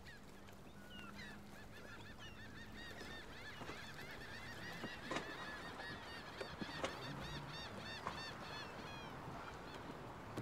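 A flock of birds calling: many short, high, overlapping calls that grow busier through the middle. A few sharp knocks come about five and seven seconds in.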